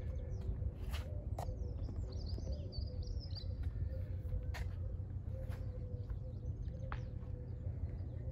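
Outdoor wind rumbling on the microphone, with a few footsteps and knocks on the roof, and faint bird chirps about two to three seconds in.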